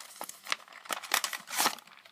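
A Pokémon trading card theme deck's packaging being torn open by hand: irregular crinkling and ripping noises with sharp crackles.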